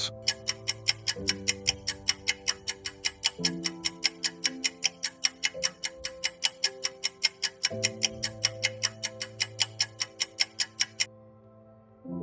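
Countdown-timer clock-tick sound effect, about four ticks a second, over soft sustained background music chords. The ticking stops about a second before the end, when the ten-second answer time runs out.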